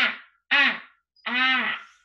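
A woman's voice sounding out a word one sound at a time, in three separate drawn-out syllables with short pauses between them; the last is held about half a second.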